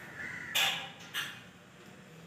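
A crow cawing twice in quick succession, the first call louder and longer, the second short.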